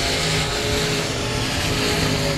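Limited modified dirt-track race cars' engines running together on the oval, a steady blend of engine notes.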